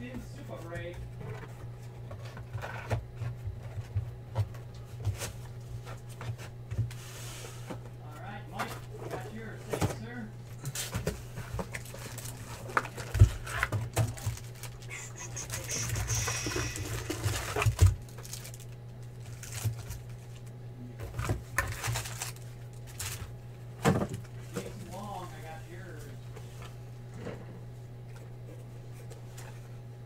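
Foil trading-card packs and cardboard card boxes being handled: scattered taps, knocks and lid flaps, with a longer burst of rustling from packs being riffled in a box about halfway through. A steady low hum runs underneath.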